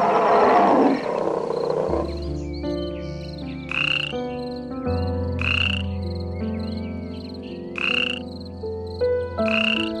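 A loud, rough animal call in the first second, then sustained background music with four short, high animal calls, one every one and a half to two and a half seconds.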